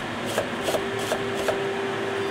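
Chinese cleaver slicing peeled garlic cloves on a wooden chopping board: five short, crisp knocks of the blade through the clove onto the board, about one every 0.4 s, over a steady hum.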